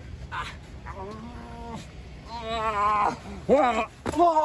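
A person's drawn-out, wordless cries: a steady held note, then a long wavering wail, then a short, louder cry that rises and falls.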